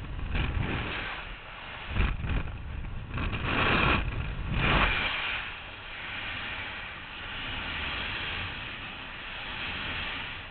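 Air rushing over a skydiver's camera microphone: loud, gusty wind buffeting with a deep rumble, which drops away about five seconds in to a softer, steadier rush.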